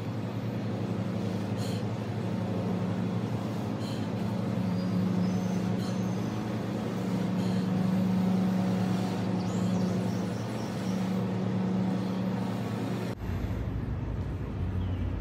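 Long, steady breaths blown into a smouldering ash-saturated paper-napkin tinder bundle, several drawn-out blows that fan the coal up to flame, over a steady low hum.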